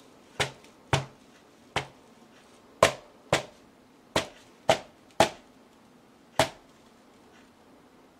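A rubber mallet strikes a canvas panel covered in wet acrylic paint, smashing the paint outward. There are nine sharp blows at an uneven pace, roughly half a second to a second apart, with a longer gap before the last one.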